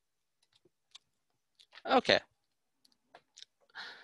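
A few faint, scattered clicks of a computer mouse, coming singly, with one short spoken "okay" in the middle.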